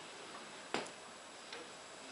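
Rigonda Symphony radio tuned between stations, giving a faint hiss of static. A sharp click comes about a second in and a softer one near the end.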